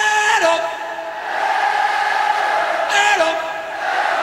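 A male lead singer's long held note with vibrato through the stadium PA, ending in a falling slide, answered by a vast stadium crowd singing and shouting back; about three seconds in he sings another, shorter held note that again slides down. This is a call-and-response vocal improvisation with the audience.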